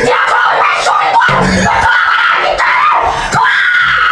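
A woman screaming loudly, breaking into a long held scream near the end.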